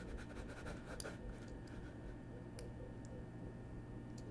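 Faint scratching and clicking from a computer pointing device being worked on a desk while brushing a mask. There is a quick run of scratches and clicks in the first second, then a couple of isolated clicks, over a low steady hum.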